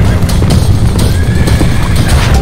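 Several horses galloping: a dense, rapid drumming of hoofbeats.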